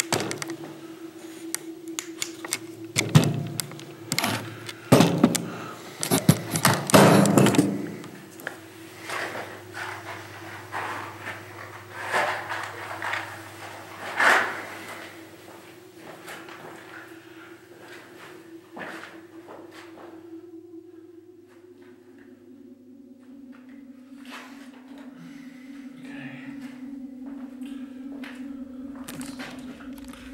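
A series of knocks and thuds, crowded into the first eight seconds and sparser after, over a steady low hum that drops in pitch about two-thirds of the way through.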